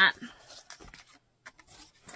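Faint rustling and rubbing of fabric quilt blocks and paper being handled, with a few soft ticks scattered through and a louder rustle near the end.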